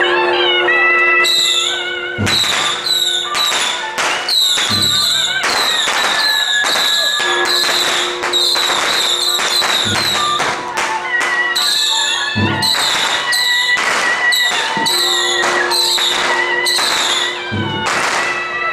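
Temple-procession percussion: cymbals and gongs clashing in a fast, even beat, with a deep drum thump every few seconds, over a held wind-instrument tone.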